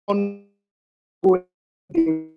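A woman's voice over a video call making three short hesitation sounds, like drawn-out "uh"s, each trailing off, with dead silence between them from the call's noise gating.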